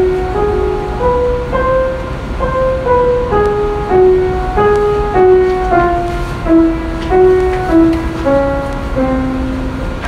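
A melody of single sustained keyboard-like notes, about two a second, stepping up and down through the degrees of an Indian raga scale, played back from a laptop.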